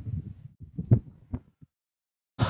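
A few soft low thumps and two short sharp clicks, about half a second apart in the second half.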